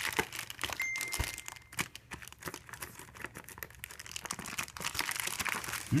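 Clear plastic wrapping on a tablet's cardboard box being handled and pulled open by hand: dense, continuous crinkling and crackling. A brief steady high tone sounds for about a second near the start.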